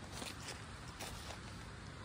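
Faint outdoor background hiss with a few soft ticks and rustles.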